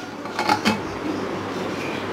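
An aluminium pressure cooker lid being fitted and closed on its pot: a few light clicks and knocks about half a second in, over a steady background noise.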